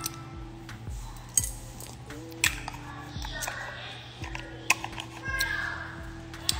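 Quiet background music with a few sharp clicks and clinks as a small glass caviar jar is handled and set down.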